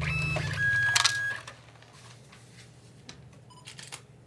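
Desktop plastic ID card printer at work: a steady electronic tone lasting about a second, starting just over half a second in, then quieter small mechanical clicks. A low music note fades out under it in the first second and a half.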